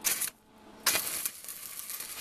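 Stick (arc) welding on steel: the flux-coated electrode strikes an arc with a short burst of crackle, goes quiet for a moment, then crackles steadily again from just under a second in.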